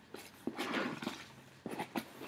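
Rustling and light knocks of paper and card being handled, a few short scuffs and taps spread through the two seconds.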